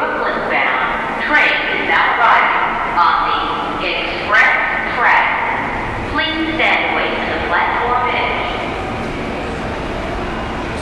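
Indistinct voices echoing on a subway station platform over a steady background din of the station; the voices die away after about eight seconds, leaving the din.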